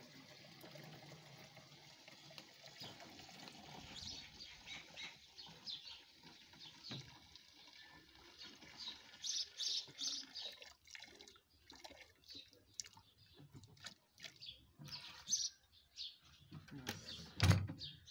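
Liquid spray mix pouring from a knapsack sprayer tank into another sprayer's tank through its filter basket: a steady splashing stream at first, breaking up into irregular gurgles and splashes as the tank is tipped further and empties. A loud thump near the end as the emptied tank is set down.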